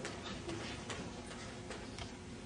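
Faint footsteps: light, evenly spaced taps, two or three a second, over low room noise.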